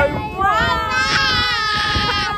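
Several voices, children's and adults', shouting together in a high, drawn-out cheer held for over a second.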